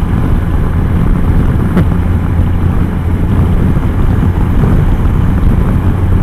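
Steady wind rush and low engine drone at highway speed on a Can-Am Spyder F3 three-wheeled motorcycle with its Rotax 1330 inline-triple, picked up by a helmet-mounted microphone.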